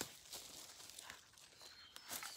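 Faint rustling and a few soft crackles of soil and dead leaves as strawberry plants are pulled up by hand from the bed.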